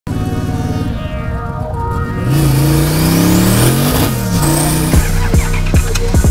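Twin-turbocharged V8 of a Factory Five 1933 Ford hot rod running under load as it drives. Its note rises, then drops about four seconds in, with a rising high whine over it. Background music with a beat plays alongside and takes over near the end.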